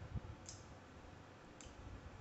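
Two faint, sharp clicks about a second apart from grooming tools, a metal face comb and shears, handled at a dog's face.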